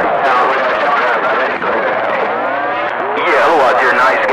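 CB radio receiver audio: a garbled, unintelligible voice transmission over steady static, the thin, band-limited sound of a distant skip signal on the 27 MHz citizens band.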